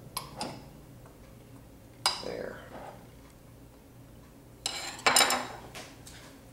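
Metal spoon clinking against a glass mixing bowl: a few light clicks at first, a single ringing clink about two seconds in, and a louder clatter of clinks near the end.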